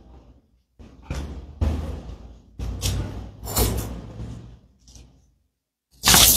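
A run of irregular knocks, bumps, scrapes and rustles from people moving about and handling objects as they get up, the busiest stretch about three to four seconds in.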